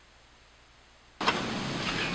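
Near silence, then a little over a second in, a steady rushing background noise with a low rumble starts abruptly.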